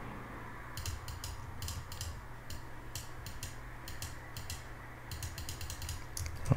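Irregular run of light, quick clicks from a computer mouse and keyboard, each click stamping another clone-stamp stroke, over a faint steady low hum. The clicks come in clusters, with a thinner patch in the middle.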